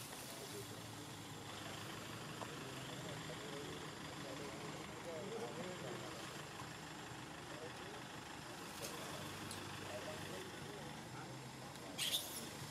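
Steady low background hum with faint, indistinct voices.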